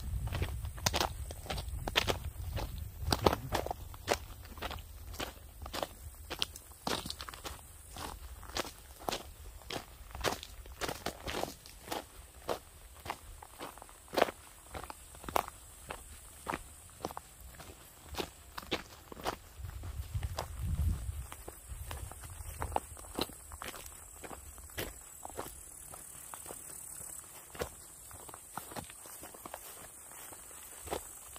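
Steady footsteps of a walker on a dirt and gravel path, about two steps a second.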